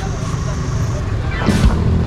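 Small motor scooter engines idling, a steady low hum, with voices near the end.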